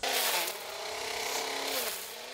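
Cordless electric string trimmer running and cutting weeds, a steady motor whine over the hiss of the line through the grass. The pitch sags briefly near the end as the line bites into the growth.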